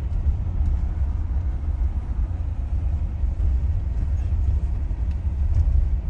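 Steady low engine and road rumble heard from inside a van's cab as it drives along an unpaved track.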